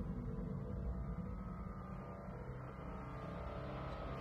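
Soft background score: a low, steady drone of held tones under the pause in the dialogue.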